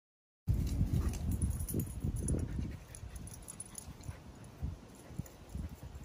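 Wind buffeting the microphone: an uneven low rumble, strongest for the first couple of seconds and then easing off.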